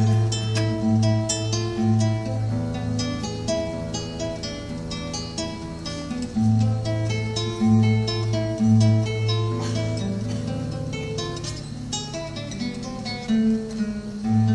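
Acoustic guitar playing an instrumental passage alone: a plucked melody over repeated low bass notes, with no singing.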